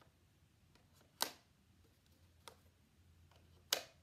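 Two sharp clicks about two and a half seconds apart, with a fainter tap between them: letter tiles being picked up and set down on a metal baking tray.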